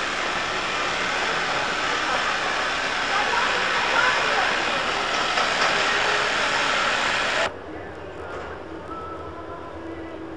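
Street noise of an articulated tram rolling slowly along street track through a pedestrian zone, mixed with passers-by's voices. About three-quarters of the way through it cuts off suddenly, leaving a much quieter background with a faint steady hum.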